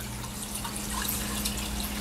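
Aquarium water running: a steady trickle and splash of water, as from the tank's filter return, over a low steady hum.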